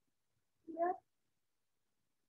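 A single short voiced sound, well under half a second, rising in pitch, about two-thirds of a second in.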